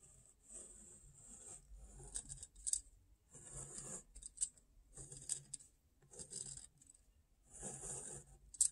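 Pen drawing straight lines on notebook paper: a series of scratchy strokes, roughly one a second, as the box and dividing lines of a lattice grid are drawn.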